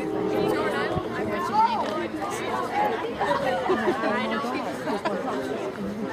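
Several people talking at once, overlapping conversational chatter of onlookers close to the microphone.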